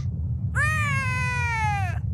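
A cartoon character's single drawn-out whining cry, sliding slowly down in pitch for about a second and a half, over a steady low rumble.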